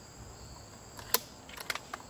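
A sharp metallic click about a second in, then a few lighter clicks, as the action of a .357 Bully air rifle is worked to chamber a round. Crickets chirr steadily in the background.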